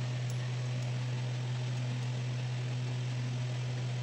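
A steady low hum over a faint hiss, with no other distinct sound: background noise of the room or the recording.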